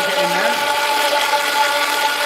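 Countertop blender running at a steady speed, a motor whine over the churning of a thick green chilli sauce in its jar.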